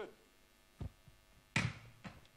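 Two thumps as a yellow dockless share bicycle is handled on a wooden stage floor: a dull low thud a little under a second in, then a louder, sharper knock about a second and a half in.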